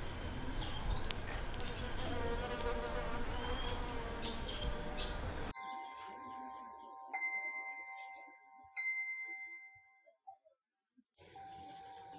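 Steady outdoor noise with a few short chirps, then a hanging metal-tube wind chime ringing, struck afresh twice, its clear tones ringing on and fading away.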